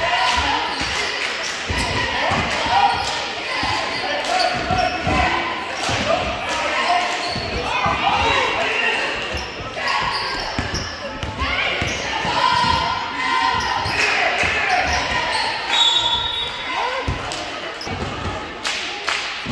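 Basketball being dribbled on a hardwood gym floor, its bounces echoing in a large hall, amid players' and spectators' voices calling out.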